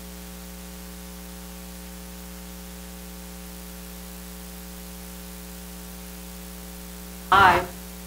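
Steady electrical mains hum with hiss in the recording, a buzz of evenly spaced tones that holds unchanged. A brief voice cuts in near the end.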